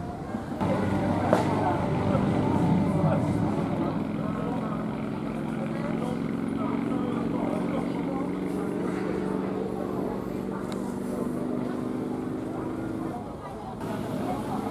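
A motorcycle engine idling steadily, starting about half a second in and stopping shortly before the end, with voices in the background.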